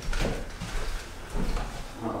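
A few dull wooden knocks and thumps from a newly built plywood desk being handled, two of them about a second and a half apart.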